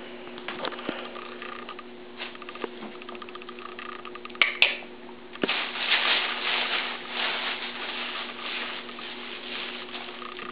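A cat playing with a toy: scattered light taps and clicks, then from about halfway a few seconds of dense rustling and scrabbling, over a steady low hum.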